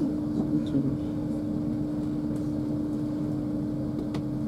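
Steady running noise inside the carriage of an LNER Azuma Class 801 electric train at speed: a continuous low rumble with a constant hum.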